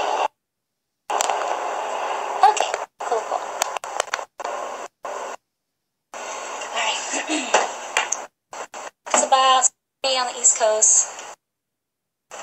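Thin, noisy phone-livestream audio that keeps cutting out to dead silence, with a woman's indistinct voice sounds near the end.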